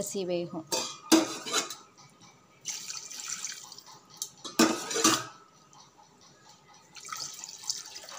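Water poured into an aluminium pressure cooker of chicken masala, splashing, with metal clanks of a vessel against the pot, the loudest about five seconds in. This is the water being added before the biryani rice goes in.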